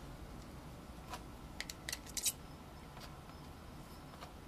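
Painting tools working on a canvas: a few short, sharp scrapes and clicks, the loudest cluster just past two seconds in, over a faint steady room hiss.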